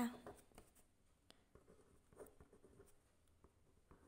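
Pen writing on paper: faint, short scratching strokes as numbers and fraction bars are written.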